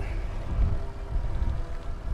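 Wind buffeting the microphone and tyre-and-road noise from a recumbent trike rolling along pavement under pedal power, an uneven low rumble with a faint steady hum.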